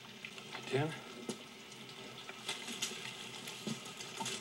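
A man calling out once, a short questioning call about a second in, over a faint background of scattered drips and ticks.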